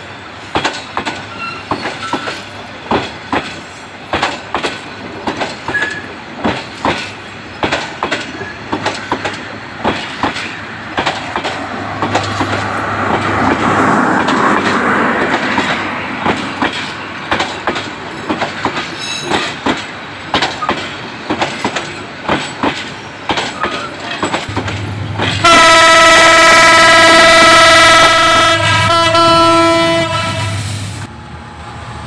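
Passenger train coaches rolling past close by, the wheels clacking rhythmically over the rail joints, with a swell of rumbling running noise near the middle. About 25 seconds in, a locomotive horn sounds loud and steady for about five seconds.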